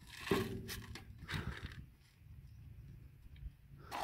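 A plastic scoop digging into a bucket of dry horse feed, the feed rattling and crunching a few times in the first second and a half, then going quieter.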